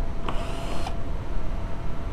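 A ratchet working a fastener out of a car's underbody splash shield: one short burst of ratcheting about a third of a second in, over a steady low rumble.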